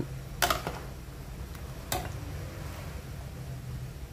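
A metal ladle clicking against the side of a metal soup pot, twice about half a second in and once near two seconds, over a steady low hum.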